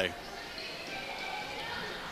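Gymnasium ambience during a basketball game: a steady crowd murmur in a large hall, with faint high squeaks from sneakers on the hardwood court.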